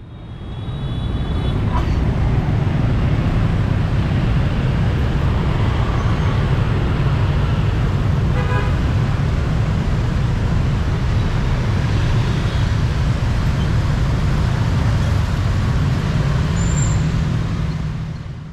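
Dense motorbike and scooter traffic: many small engines running together as a crowd of motorbikes pulls across an intersection, swelling up over the first two seconds and then holding steady. A short horn beep sounds about halfway through.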